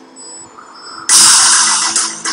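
Soundtrack of a car commercial. The music falls away to a quiet moment, then a loud hissing rush of noise starts abruptly about halfway through.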